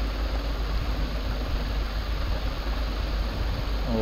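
Steady low hum with an even hiss over it: background room and microphone noise.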